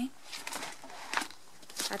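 Clear plastic binder sleeves rustling and crinkling as the pages of a photocard binder are handled: a few short, soft crinkles.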